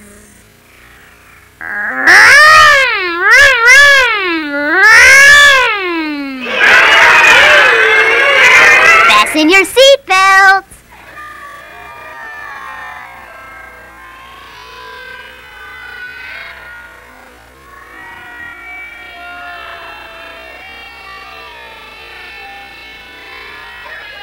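Children's voices imitating cars and trucks: loud wavering wails that swing up and down in pitch for about nine seconds, then break off. After that, quieter soft music plays.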